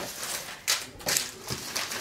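Packaging being handled: several short rustles and taps as boxes and items are picked up and moved on a desk.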